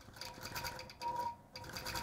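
Computer-guided long-arm quilting machine running, its needle stitching in a fast, even rhythm with a steady motor hum. It is faint and breaks off briefly just past the middle.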